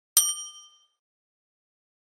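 A single bright bell-chime sound effect, the ding of a subscribe animation's notification bell being clicked. It is struck once and rings out with several clear pitches, dying away within about a second.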